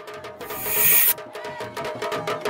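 Logo-ident music: a whoosh swells up and cuts off sharply about a second in, then a fast run of short percussive hits over a held tone begins.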